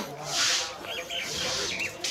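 A cow eating dry mixed feed from a plastic tub: rustling, rubbing munches of the dry chaff, about one a second.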